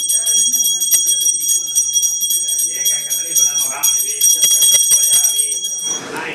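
A puja hand bell rung continuously, its high ringing tones held steady throughout and stopping at the end, over murmuring voices.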